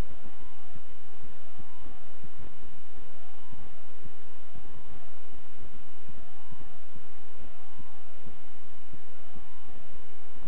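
An emergency-vehicle siren wailing, its pitch sweeping up and down over and over, over a steady background noise.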